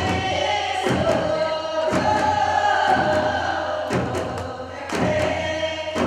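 A group of women's and children's voices singing a Korean folk song together, accompanied by Korean barrel drums (buk) struck with sticks on a steady beat of about one stroke a second.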